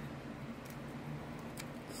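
A few faint, short clicks of 3D-printed plastic being handled as brim is picked off an articulated print, over a steady low hum.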